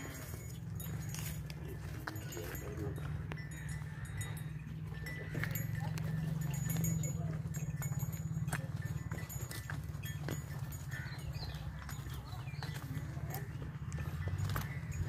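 Cattle walking on a dry dirt yard: scattered, irregular hoof steps and scuffs over a steady low rumble.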